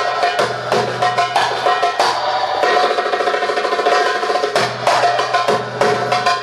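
Darbuka (Arabic goblet drum) played by hand in a fast rhythm of sharp, ringing strokes, breaking into a rapid roll midway through before the beat resumes.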